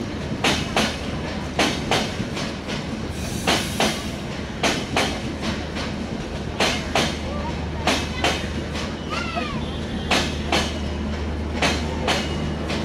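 Linke Hofmann Busch passenger coaches of a train rolling past, their wheels clacking over the rail joints in regular double beats about once a second, over a steady low hum.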